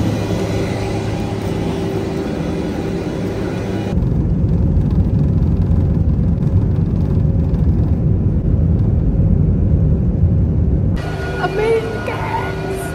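Steady whine and hum of a jet airliner and airport apron for about four seconds. Then, inside the cabin, a louder, deep, steady rumble of the jet engines and the cabin as the plane runs along the runway on take-off. It cuts off a second before the end.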